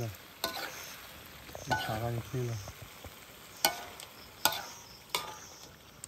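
Metal ladle stirring chunks of meat in a black wok over a wood fire: the food sizzles steadily while the ladle scrapes and clinks sharply against the pan a few times, mostly in the second half.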